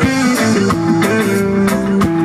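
Live reggae band playing an instrumental passage: electric guitar holding long notes over bass, keyboard and a drum kit.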